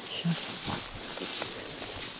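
A short pause in a woman's speech, filled by a faint, steady outdoor hiss. A brief sound of her voice comes a moment in.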